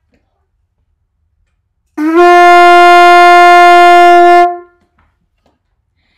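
Conch shell blown like a trumpet with tight, buzzing lips: one loud, steady note on the shell's fundamental F. The note starts about two seconds in with a slight upward scoop, holds for about two and a half seconds, then fades out.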